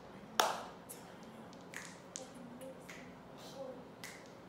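One sharp clap about half a second in, ringing briefly, followed by several faint taps spread through the next few seconds.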